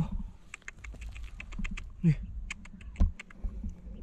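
Hands digging and scraping through dry, stony soil: a run of small sharp clicks as pebbles and grit shift under the fingers, with a dull knock about three seconds in.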